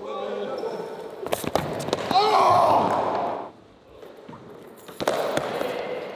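Excited yelling and cheering from a group of riders in a large, echoing hall, loudest in a long shout a little after two seconds in, with a few sharp knocks on the concrete floor around it.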